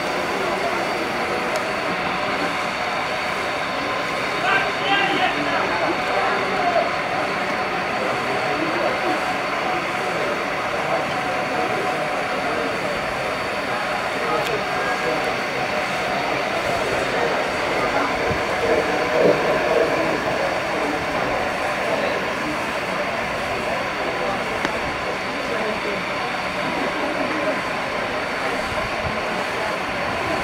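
Steady open-air background noise with faint, indistinct voices now and then, a little louder a few seconds in and again past the middle.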